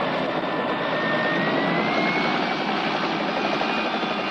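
Aircraft engine noise: a steady rushing drone with a high whine that rises slightly in pitch between about one and two and a half seconds in.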